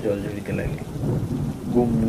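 Heavy rain pouring down, with a continuous low rumble of thunder.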